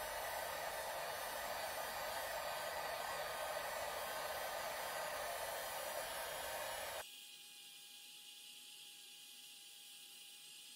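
Heat gun blowing hot air onto heat-shrink tubing over a crimped wire connector, a steady loud rush that switches on suddenly. About seven seconds in it drops abruptly to a much quieter steady hiss with a faint steady whine.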